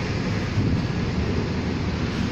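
Transit bus engines running steadily close by, a low even rumble, with wind on the microphone.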